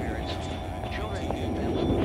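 Experimental tape sound collage: a dense, steady low rumble with faint voice-like fragments, short rising chirps and small clicks over it, a little quieter in the middle.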